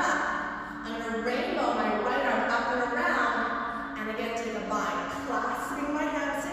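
Only speech: a woman talking steadily.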